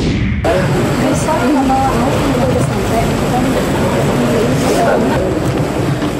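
Field sound of a group scrambling up a steep hillside: several voices talking over one another in short broken bits over a steady rough rustle of movement and handling noise, cutting in abruptly about half a second in.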